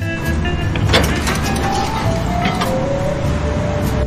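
Background music overlaid by a loud rushing noise sound effect that starts and stops abruptly, with a sharp crack about a second in and a few faint gliding tones.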